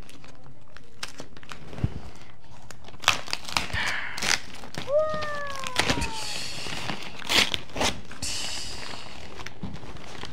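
Kraft wrapping paper and ribbon on a gift box being handled and pulled, giving scattered crinkles and rustles. There is a short falling squeak about five seconds in.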